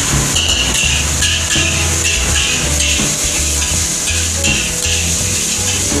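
Fried rice sizzling in a hot wok as it is stirred with a spatula, a steady hiss. Background music with a regular beat plays alongside.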